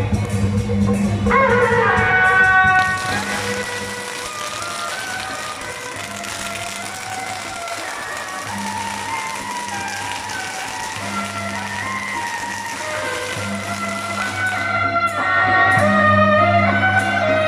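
Beiguan processional band playing, a suona melody over drums and cymbals. From about three seconds in until near the end, a string of firecrackers crackles behind the music.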